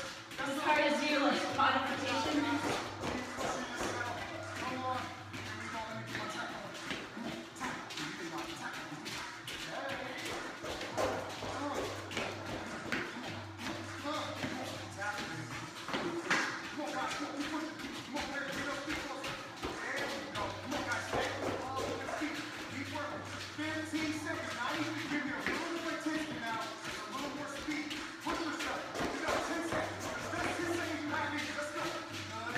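Sneakers tapping and shuffling quickly on a padded floor as two people do side-shuffle drills, with a patter of short footfalls throughout. Background workout music and indistinct voices run under the steps.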